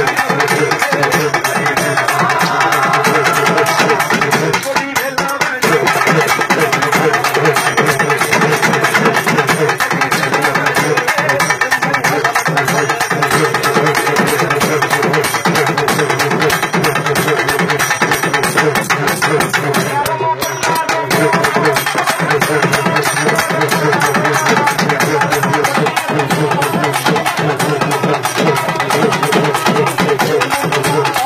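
Urumi melam drum troupe playing a fast, driving rhythm on urumi and barrel drums, with short breaks about five and twenty seconds in.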